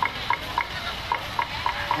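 Quick, evenly spaced clicks, about four a second, over a steady hiss.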